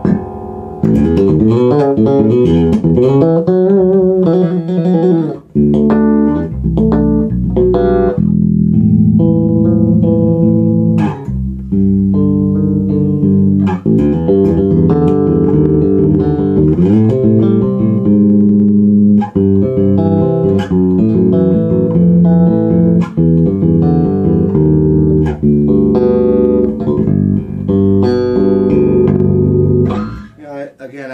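Dingwall NG2 fanned-fret electric bass played clean through a Gallien-Krueger MB Fusion 800 amp and Bear Amplification ML-112 cabinet: a continuous line of notes with a few sliding pitches. The active preamp's mid-range control is being swept to demonstrate it.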